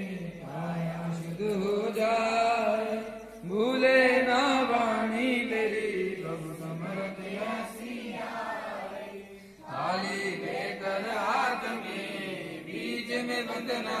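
Worshippers chanting a devotional hymn in long sung phrases, with short breaths between phrases about three and a half and nine and a half seconds in.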